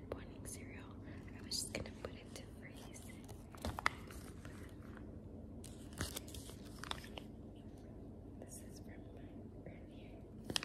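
Faint, scattered clicks and crinkles of a plastic breast-milk storage bag being handled, its zipper seal pulled open, with soft whispering under it.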